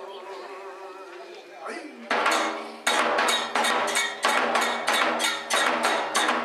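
Kagura accompaniment: a wavering chanted voice, then about two seconds in the taiko drum and percussion come in with sharp, ringing strikes in a steady beat of about three strokes every two seconds.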